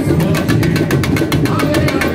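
Samba school drum section (bateria) playing a samba rhythm: fast, even strokes of the higher drums over the deep, steady beat of the bass drums.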